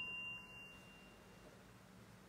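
A struck meditation bell ringing out with a few clear, high pitches, fading away about a second and a half in.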